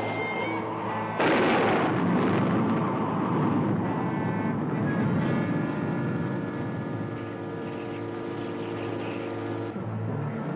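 Tense orchestral TV score of held string notes. About a second in, a sudden loud crash hits and dies away over the next few seconds while the music holds.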